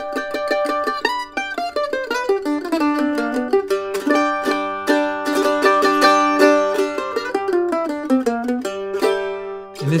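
Kentucky KM150 all-solid-wood A-style mandolin played solo with a pick: a quick picked melody, with a low note ringing steadily underneath from about a third of the way in. The playing stops just before the end.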